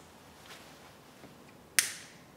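A single sharp click near the end, a lighter being sparked to light an Advent wreath candle, against quiet church room tone.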